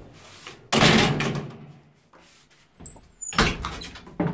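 The metal landing door of an old ZUD elevator is worked by hand. There is a loud clunk about a second in as the door is opened, a short high squeak near three seconds, then a cluster of bangs and rattles as the doors shut.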